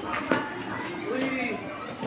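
Children's voices calling out during outdoor play, with a single sharp knock about a third of a second in.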